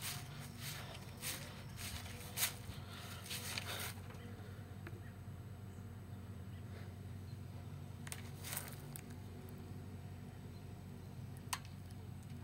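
Pool sand-filter pump running quietly with a low steady hum, still on when it should have shut off. Scattered steps and rustles on gravel fall in the first few seconds and again about eight seconds in.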